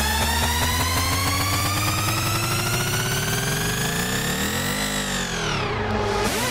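Hardstyle build-up. A pitched synth riser climbs steadily for about five seconds, then dives sharply in pitch near the end, over a low bass rumble that thins out before the dive.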